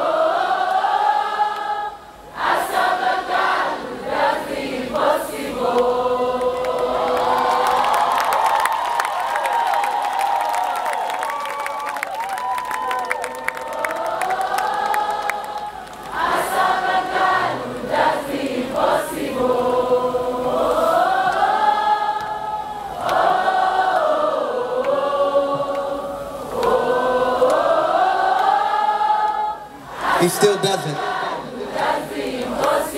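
A large crowd singing a worship chorus together without instruments, in long phrases with short breaks between them.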